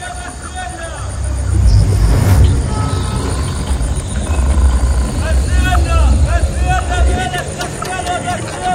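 Psytrance track: a deep pulsing bass comes in about a second in, under a processed spoken-voice sample with a swooshing sweep shortly after.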